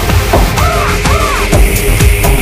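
House music from a DJ mix: a steady four-on-the-floor kick about twice a second, with a pitched line that swoops up and down twice. Crisp hi-hats come in near the end.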